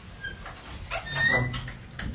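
Dry-erase marker squeaking on a whiteboard while writing: a few short, high squeaks, the longest about a second in.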